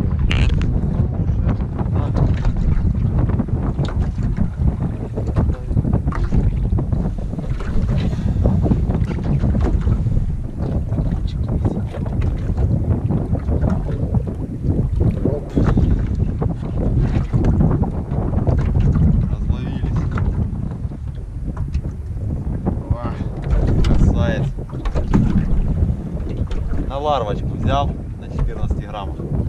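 Steady wind buffeting the camera microphone aboard a small open fishing boat, a continuous low rumble. Some brief wavering higher sounds come in near the end.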